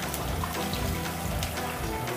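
Water poured in a steady stream from a measuring jug into a wok of oil and chopped garlic, over background music.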